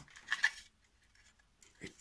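Plastic SATA cable connectors clicking and rattling against a 2.5-inch SSD as they are plugged into it, a short cluster of clicks about half a second in.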